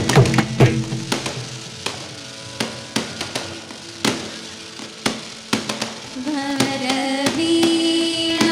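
Carnatic concert music: mridangam strokes in a quick run in the first second, then sparse single strokes over a steady held tone, before young voices start singing a Carnatic melody about six seconds in.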